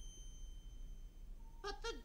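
A quiet stretch with a faint, high, steady tone that fades out; near the end a woman starts singing.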